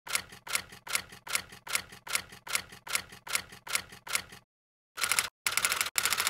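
Typewriter keys striking one at a time, about two and a half clacks a second, then after a brief pause a quicker run of keystrokes near the end.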